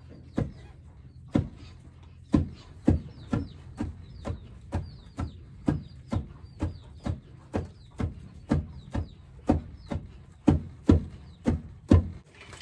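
Two long wooden pestles pounding mahangu (pearl millet) in a hollow in the ground, taking turns, so the thuds come about twice a second. The grain is being pounded into flour.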